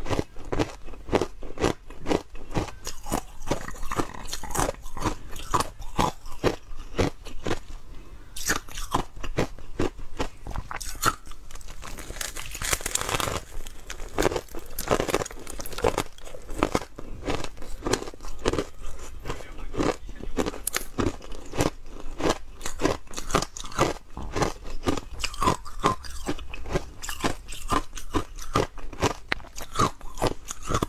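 Close-miked ice eating: a chunk of ice bitten and chewed in quick, continuous crunches, several a second, with a denser run of crackling crunches about halfway through.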